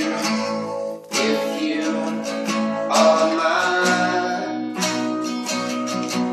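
Two acoustic guitars played together, strumming chords in a steady rhythm, with a brief break about a second in.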